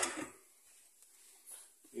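A man's voice trailing off, then near silence with one faint soft sound about one and a half seconds in.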